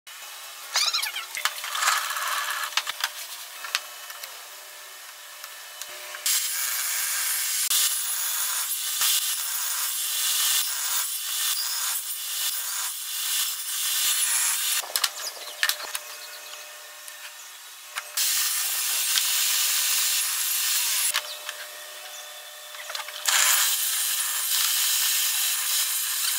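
Table saw cutting hardwood in repeated passes, each a steady hiss-like run of several seconds that starts and stops sharply: the longest begins about six seconds in, with further cuts about eighteen and twenty-three seconds in. Lighter scratching and small knocks fill the first seconds and the gaps between cuts.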